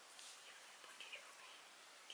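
Near silence, with faint whispering about a second in.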